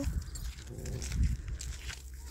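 Wind rumble and handling noise on a close-held phone microphone, with a faint, brief voice sound from the lamenting woman about half a second in.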